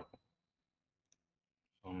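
A single faint computer mouse click about a second in, picking a measuring point in the modelling software, against near silence.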